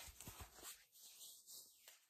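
Near silence, with a few faint soft ticks in the first second from hands handling the fabric cover of an inflatable neck pillow.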